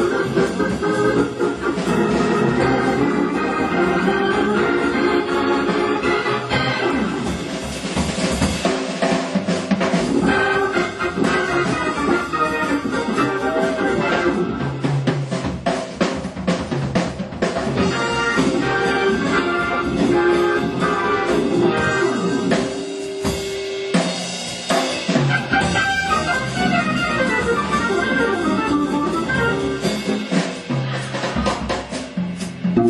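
Hammond New B-3 organ playing jazz, backed by a drum kit.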